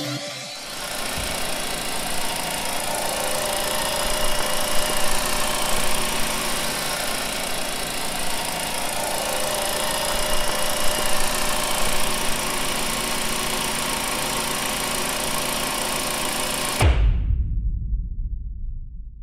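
Volkswagen Jetta MK VI engine running at a steady idle, heard close up from the open engine bay. About a second before the end it gives way abruptly to a loud low rumble.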